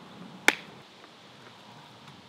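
A single sharp click, like a snap, about half a second in, over a faint background hiss.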